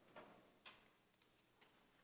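Near silence: faint room tone with three soft, short clicks.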